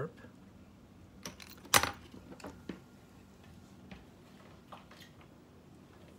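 Light metallic clicks and taps of a small screwdriver and flute keys being handled while an adjustment screw on a student flute's key mechanism is turned, the sharpest click a little under two seconds in and a few fainter ones after.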